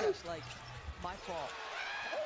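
Basketball game broadcast playing at low level: a play-by-play commentator talking over arena noise, with a basketball being dribbled on the hardwood court.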